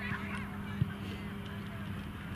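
Field ambience at a soccer pitch: a steady low hum under scattered short, high, wavering calls in the distance, with one sharp thump a little under a second in.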